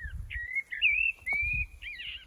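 A songbird singing one continuous warbling phrase of high whistled notes that rise and fall in pitch, over a low rumble.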